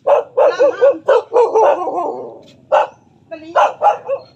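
A dog barking: a quick run of short barks in the first two seconds, then a few more further on.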